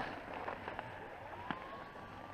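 Skis sliding over packed snow with a steady hiss, broken by a few small clicks and crackles.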